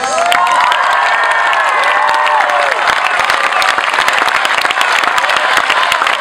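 Audience clapping and cheering, with rising-and-falling whoops over the first three seconds and dense clapping throughout.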